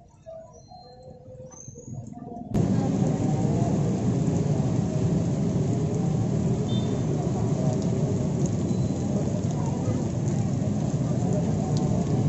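Roadside street noise that starts abruptly about two and a half seconds in and then holds loud and steady: traffic mixed with an indistinct hubbub of voices.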